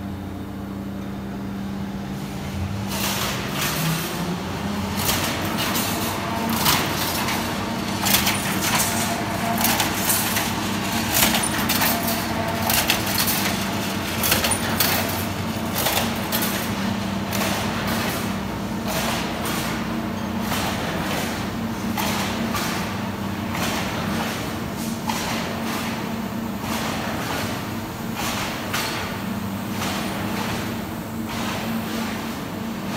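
Factory-floor noise in a rebar mesh production shop: a steady machine hum, with frequent irregular sharp knocks and clanks that start a few seconds in.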